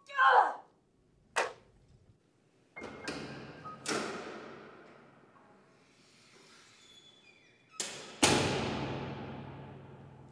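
A woman's short cry that falls in pitch, then a sharp knock, followed by several heavy booming impacts that ring out slowly, the loudest about eight seconds in.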